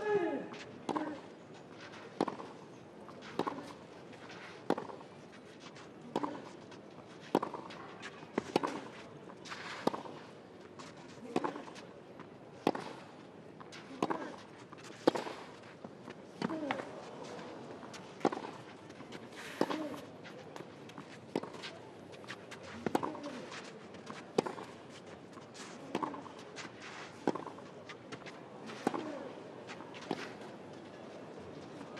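Tennis racquets striking the ball back and forth in a long baseline rally on a clay court, a hit about every second and a quarter. Some of the shots come with a short grunt from the player.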